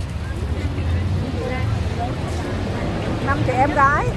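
Street ambience: a steady low rumble of road traffic, with people's voices nearby that grow louder near the end.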